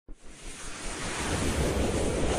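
Whooshing intro sound effect: a noisy rush with a low rumble that starts suddenly and swells steadily louder.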